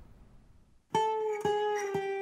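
Short plucked-guitar music sting coming in about a second in: three strokes about half a second apart, the notes ringing on.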